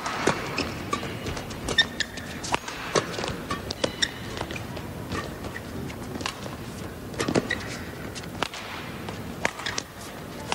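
Badminton rally: rackets strike the feather shuttlecock in a run of sharp hits, mixed with short squeaks and patter of court shoes on the mat, over the steady hum of an indoor arena crowd.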